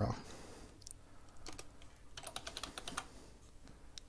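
Computer keyboard typing: a couple of keystrokes about a second and a half in, then a quick run of keystrokes in the middle as a search term is retyped.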